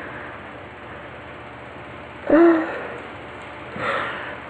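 Quiet room tone, broken a little over two seconds in by a woman's short wordless vocal sound, a brief hum, with a fainter breath-like sound near the end.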